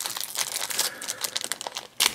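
Yellow foil blind-bag packet crinkling and crackling as two hands crumple it and pull at it to tear it open, an uneven stream of small crackles.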